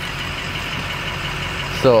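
Ford pickup truck's engine idling steadily, heard from inside the cab with the driver's window open.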